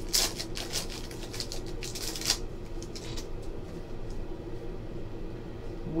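Foil trading-card pack wrapper crinkling as the torn pack is pulled apart and the cards are slid out. A dense run of crackles for about the first two seconds gives way to a few faint clicks of cards handled.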